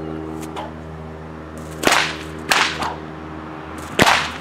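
Bullwhip cracking during a fast figure-eight combination: two sharp cracks a little over half a second apart about two seconds in, and another right at the end.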